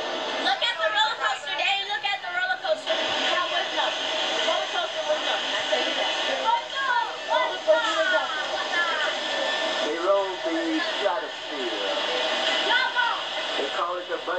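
Indistinct voices from a home video playing through a television speaker, over a steady hiss.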